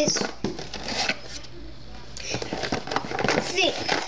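Cardboard toy box being handled and opened: crinkling, rustling and light clicks of the packaging, with a short lull about halfway through.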